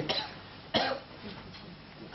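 A person coughing: one sharp cough a little under a second in.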